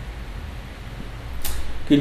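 A low, steady hum in the recording, with a short hiss about one and a half seconds in, like a quick breath in. A man's voice begins a word right at the end.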